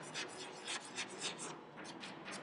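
Chalk writing on a chalkboard: a quick series of short, faint scratches as a word is written out.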